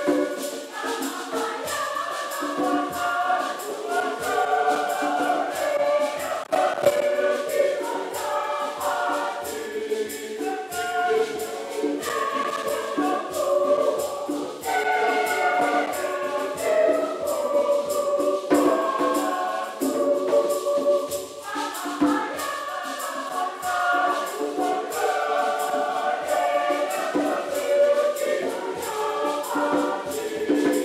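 Mixed church choir of men and women singing a hymn together, with a jingling hand percussion keeping the beat.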